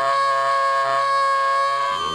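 Tenor saxophone holding one long, high, reedy note. The low notes of tuba and cello drop out under it and come back in near the end.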